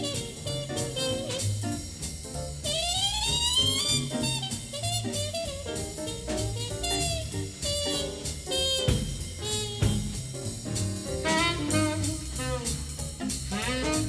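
Instrumental break in a 1950s small-group jazz recording: a horn solo over bass and drums, with a rising run about three seconds in.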